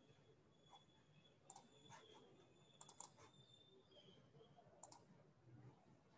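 Near silence: room tone with a few faint clicks from a computer, in small clusters about a second and a half in, around three seconds and near five seconds.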